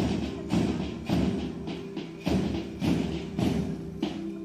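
March music with a steady, heavy drum beat, a little under two beats a second.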